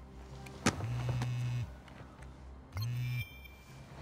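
A mobile phone vibrating with an incoming call: a low buzz in pulses of about a second. Two buzzes fall here, the second cut short as the call is answered. A sharp click comes just before the first buzz.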